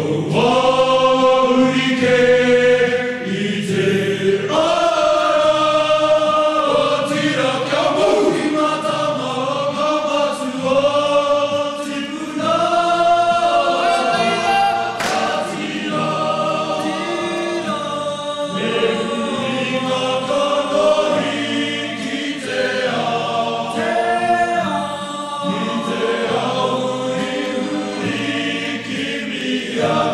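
A choir singing a Māori song in harmony, several voices together in sustained, flowing phrases.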